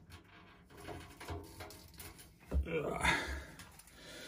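Quiet handling and rustling as a tape measure is held and worked inside a front-loading washing machine's steel drum. A short breathy vocal sound, a murmur or sigh, comes about two and a half seconds in.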